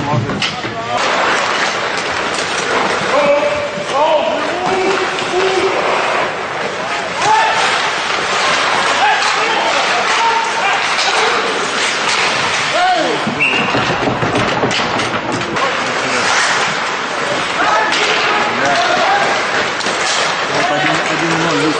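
Ice hockey scrimmage: players' shouts and calls over the scrape of skate blades on ice, with many sharp clacks of sticks on the puck and thuds of the puck against the boards.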